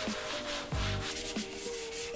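Antiseptic wipe rubbed over a wooden desktop in repeated scrubbing strokes, with soft background music underneath.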